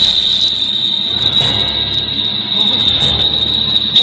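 Effects-processed cartoon soundtrack: a loud, steady high-pitched whine over a garbled, noisy wash, with no clear words or tune.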